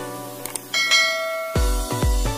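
Intro music with a bell-like notification chime sound effect, which rings out for under a second just after two quick clicks. A heavy electronic beat with deep bass kicks comes in near the end.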